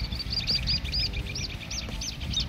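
A bird calling a quick run of short high whistled notes, each rising and falling, about four a second and slowing a little towards the end, over a low rumble of background noise.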